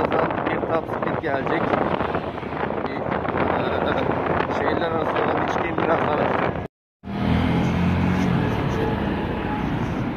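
Motolux Rossi RS 108r scooter under way, its engine and variator drive running with wind rushing over the microphone. About two-thirds of the way through, the sound cuts out for a moment and comes back as a steadier engine hum.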